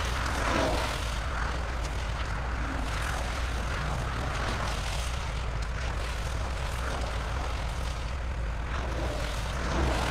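Heavy-duty tow truck's diesel engine running steadily, a low drone with a wash of road-like noise over it.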